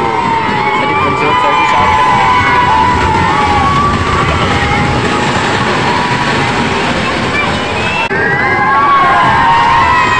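Children on a moving fairground dragon-train ride shouting and screaming with long, wavering cries over the ride's steady, loud rumble.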